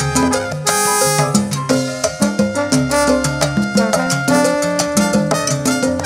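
Live salsa orchestra playing an instrumental passage without singing: a horn section over Latin percussion.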